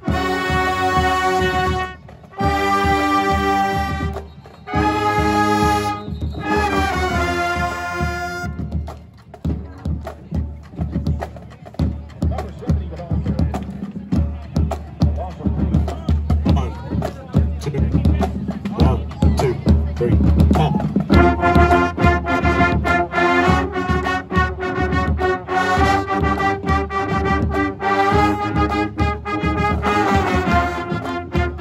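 Marching band playing in the stands: the brass section holds loud chords in four blasts with short breaks between them, then drops out for a drum break of steady rhythmic hits about eight seconds in, and the horns come back in with held chords at about twenty-one seconds.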